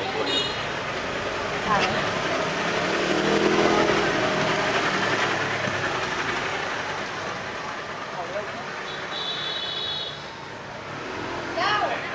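A motorbike passes close by, its engine swelling about three seconds in and fading away over the next few seconds, over street noise.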